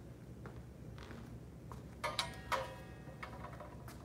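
A practice saber being handled and set down: a few faint knocks, then about two seconds in a brief clatter with a short ringing tone.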